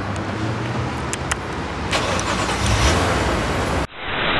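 Car engine running close by as the car moves off, getting louder about two seconds in; the sound cuts off abruptly near the end.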